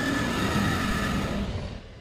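Dinosaur roar sound effect: a long, rumbling roar that fades out about a second and a half in.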